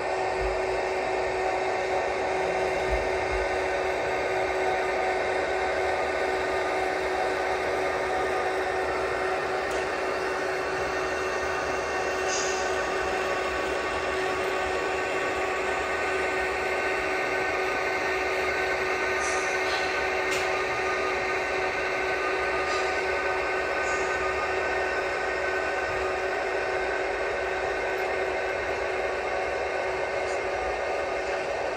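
HO-scale model coal train with Rio Grande diesel locomotives running along the layout track, a steady mechanical hum with a few held tones. A few faint, brief high ticks come through about halfway in.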